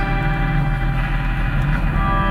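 Live band jam music: a dense drone of many held tones over a deep, constant low note, with no clear beat.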